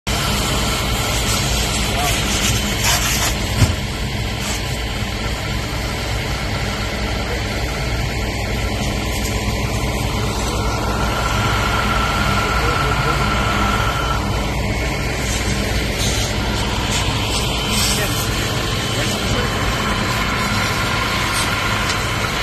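Fire truck engine running steadily to drive its pump, with water spraying from a fire hose. A single short knock sounds a few seconds in.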